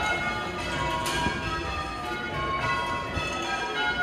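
Church tower bells being rung full circle in change ringing: a steady succession of bell strikes, each tone ringing on over the next.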